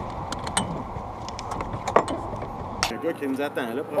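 The Campagna T-Rex's engine idling in neutral with a low, steady rumble, while several sharp clicks and knocks come from the open cockpit as the occupants move to get out. About three seconds in the rumble cuts off and a man's voice exclaims.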